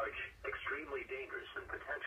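Speech only: the computer-synthesized voice of a NOAA Weather Radio broadcast reading a tornado warning, heard through a weather radio receiver's speaker.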